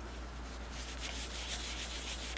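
A cloth rubbing back and forth over the painted bed of a Singer 221 Featherweight sewing machine, buffing off cleaner wax: a faint, even rubbing hiss in repeated strokes.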